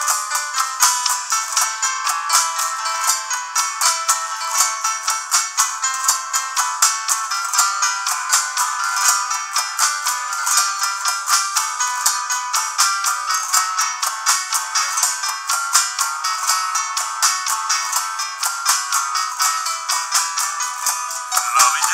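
Live band playing an instrumental passage led by a nylon-string acoustic guitar, with keyboard and hand percussion keeping a quick, even beat. The sound is thin, with no low end.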